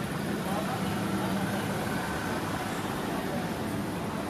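Roadside street ambience: a steady rumble of passing traffic with indistinct voices of people talking nearby.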